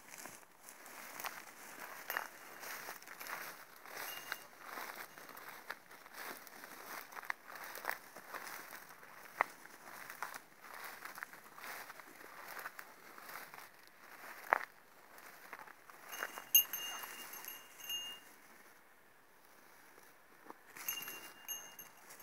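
Footsteps wading through tall grass: an irregular swish and rustle of stalks with a few sharper snaps. Near the end a faint, thin, high ringing tone sounds twice, each time for a second or two.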